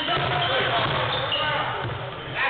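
Basketball being dribbled on a hardwood gym floor, with voices echoing in the hall.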